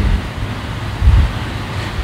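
Steady background hiss and low rumble, with one brief low thump about a second in.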